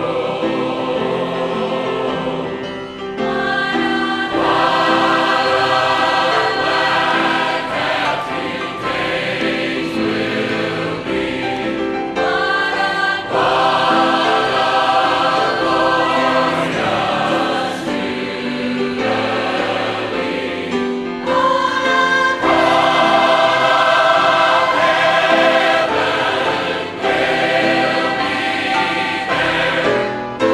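Large mixed choir of men's and women's voices singing a southern gospel song in full harmony, in phrases with short breaths between them, with piano accompaniment. The singing swells louder about two-thirds of the way in.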